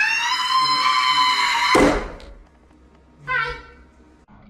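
A long, high-pitched, effect-altered voice cry rises and holds, then is cut off about two seconds in by a loud crash of a hollow door panel being smashed through. A short high-pitched vocal sound follows near the end.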